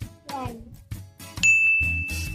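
A short falling-pitched sound, then about one and a half seconds in a bright ding sound effect that rings on as one steady high tone.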